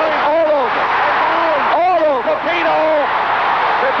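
A man's excited voice over a steady arena crowd noise at a knockdown in a boxing match.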